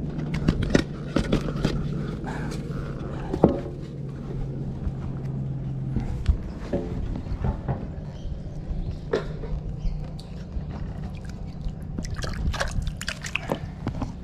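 Water dripping and splashing, with scattered clicks and knocks and a low steady hum that stops about six seconds in.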